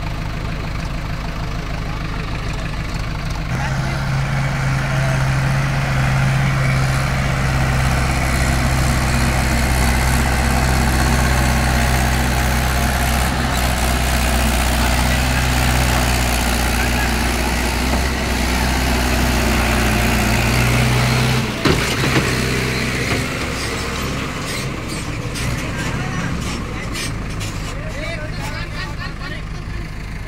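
Mahindra 475 tractor's diesel engine running at a steady pitch as it drives along a dug trench pulling a trailer; it gets louder about three and a half seconds in. There is a single sharp knock a little past the twenty-second mark, after which the engine is quieter.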